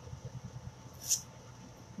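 Faint handling sounds of a small adhesive stencil transfer being lifted and repositioned on a chalkboard surface, with one brief soft hiss about a second in.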